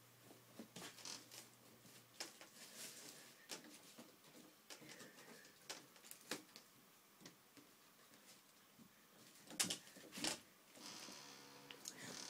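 Near silence: room tone with faint scattered clicks and rustles, and two sharper clicks near the end.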